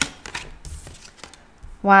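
Oracle cards being handled and drawn from a deck: a sharp card click at the start, then a few faint taps and slides of card stock.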